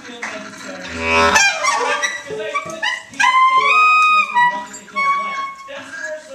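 Free-improvised music for clarinet, wordless voice, cello and drums. A thick low sound about a second in is followed by high held notes that step upward in the middle, over scattered clicks and taps.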